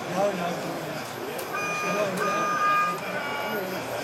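Background chatter of voices, with a short run of electronic beeps that change pitch between beeps, starting about a second and a half in.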